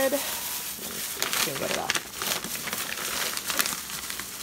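Thin clear plastic bag crinkling and rustling in irregular crackles as a hand rummages in it to pull out a packaged item.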